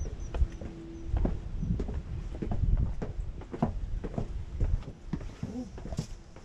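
Footsteps on brick and stone: irregular hard taps about two a second, over a low rumble on the microphone.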